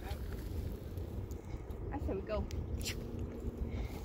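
Low, steady outdoor rumble at the mic, with a faint voice speaking briefly about two seconds in.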